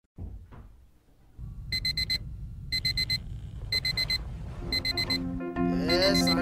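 Mobile phone alarm going off: four bursts of rapid high-pitched beeps, about one burst a second, starting about two seconds in. Background music comes in near the end.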